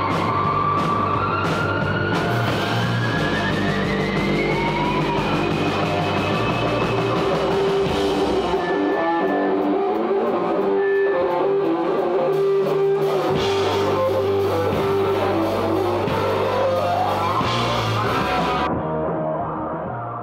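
Rock band music with electric guitar and drums. A guitar line glides upward over the first few seconds, the cymbals drop out for a few seconds in the middle and return, and near the end they stop and the music starts to fade out.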